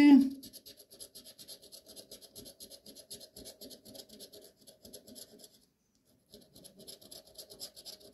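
A copper coin scraping the silver coating off a paper scratch-off lottery ticket in quick, evenly repeated strokes, with a brief pause about six seconds in.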